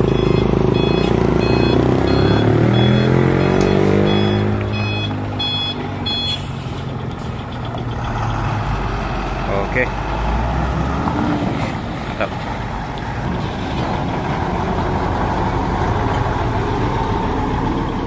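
Heavy trucks driving past close by on a rough road, their diesel engines rumbling steadily. During the first six seconds a reversing alarm beeps in even pulses, while one engine's note falls in pitch as it passes.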